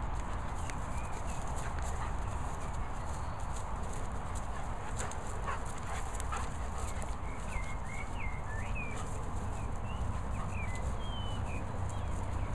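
A Bernese Mountain Dog and an English Pointer play-fighting and chasing on grass, with short scuffs and clicks from their scuffling. Short high chirping notes come and go, thickest in the second half.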